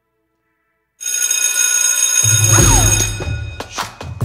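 An electric school bell starts ringing suddenly about a second in and rings for about two seconds, as a deep bass tone and a falling swoop of an intro music track come in. The ringing stops near the end and drum strokes begin.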